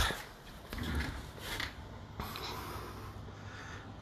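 Faint handling noise: soft rustles and rubs, with a few light knocks.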